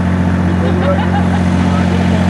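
A steady low hum, strong and unchanging, under faint voices of people talking.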